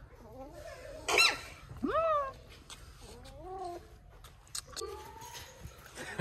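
A small puppy whining and yipping in a few short, high-pitched, arching cries, the loudest about one and two seconds in, then softer ones later.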